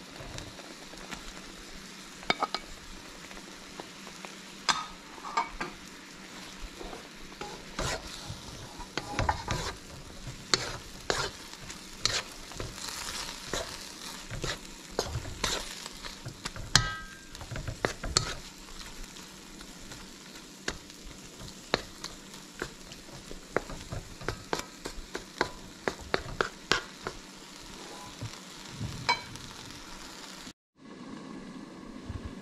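Coconut milk sauce sizzling steadily in a large metal wok while octopus pieces are stirred in with a wooden spatula. The spatula scrapes and knocks against the pan over and over, thickest through the middle.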